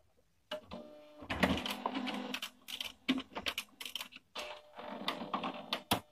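HP LaserJet M175nw colour laser printer running its initialization cycle after the cartridge door is closed: motors and gears whir, with a rapid irregular run of clicks and clacks. It starts about half a second in and cuts off suddenly at the end.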